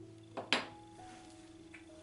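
Two quick knocks with a short ring, about half a second in, from the mixing bowl being struck or handled while dough is mixed by hand, over soft background music.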